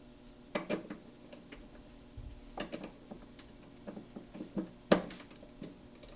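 Irregular small metallic clicks and taps of a wrench on the mounting nuts of a starter solenoid's terminal studs as they are tightened down, with a sharper click about five seconds in.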